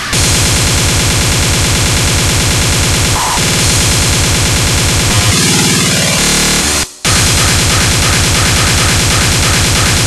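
Speedcore electronic music: very fast, distorted kick drums pounding under a dense, noisy wall of synths. About five seconds in the pattern breaks into a glitchy, stuttering passage, then cuts out for a split second just before seven seconds, and the kicks slam back in.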